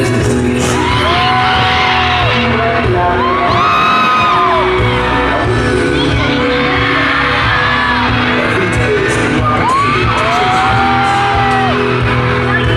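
Loud live music in a concert hall, with steady bass notes and long, high voices held for about a second at a time, three times, over it.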